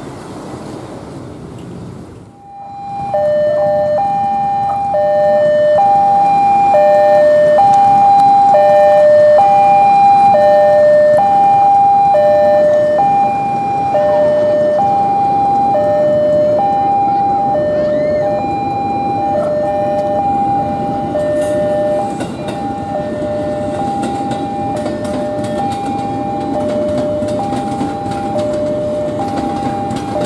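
Two-tone electronic railway warning alarm sounding, alternating between a high and a low tone about once every two seconds. It starts suddenly a couple of seconds in. Under it, a KRL JR 205 electric train rumbles in, with wheel clicks on the rail joints toward the end.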